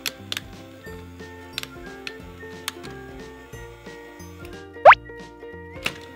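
Light background music with scattered sharp plastic clicks from the stamper wheel of a Play-Doh Mega Fun Factory being worked. About five seconds in comes a short, loud, rising whistle.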